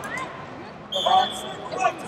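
Rubber-soled wrestling shoes squeaking on the mats in a large hall, heard as several short scattered squeaks. About a second in comes a brief high, steady whistle-like tone.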